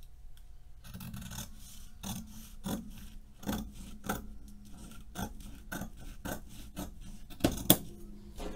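Scissors cutting white fabric along a pinned paper collar pattern: a steady run of snips about two a second, the loudest pair near the end.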